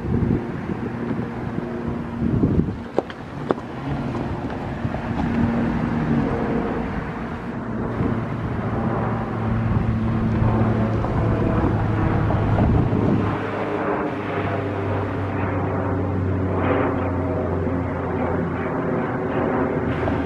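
Electric commuter train approaching along the track: a steady drone with a humming tone, growing somewhat louder about halfway through, with wind on the microphone.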